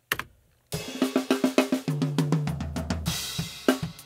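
Raw, unprocessed acoustic drum kit playing back through only a spaced pair of overhead microphones, the close mics muted. After a short pause comes a fast run of drum hits that steps down in pitch from a higher tom to a lower one, then a crash cymbal about three seconds in.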